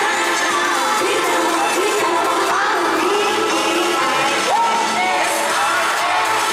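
Live pop song from a concert stage: a female group singing into handheld microphones over the backing track through the hall's sound system, with the audience cheering and whooping.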